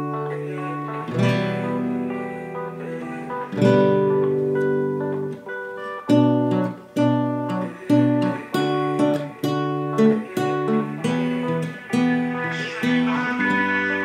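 Steel-string acoustic guitar playing the song's chord loop in plain open chords: B minor, D, E minor and G. It opens with a few long, ringing strummed chords, then from about six seconds in settles into a steady rhythm of short chord strokes, roughly two a second.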